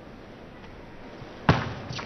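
A table tennis ball struck in play: one sharp, loud click about one and a half seconds in, ringing briefly in the large hall, with fainter ticks of the ball just after. Before it, only low, steady hall hum.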